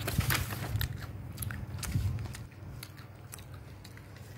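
A plastic snack packet crinkling and crackling close to the microphone as it is handled and set down on the table, busiest in the first half and dying down after about two and a half seconds.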